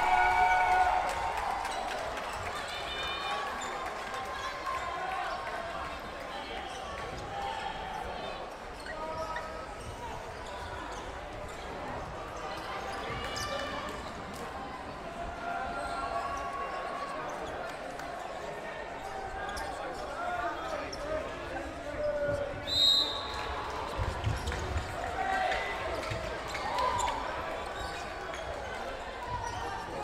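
Dodgeball play in a reverberant sports hall: players shouting and calling to each other, with balls thudding on the wooden court. A short, sharp whistle blast sounds about two-thirds of the way through.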